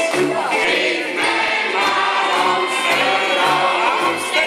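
A recorded song playing: several voices singing together over instrumental backing with a steady bass line.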